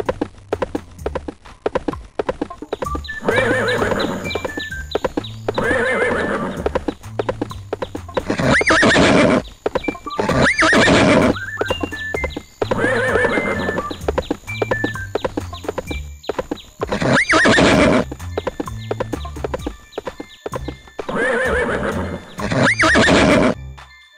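Cartoon horse sound effects: a steady clip-clop of hooves with a whinny about every two seconds, over background music.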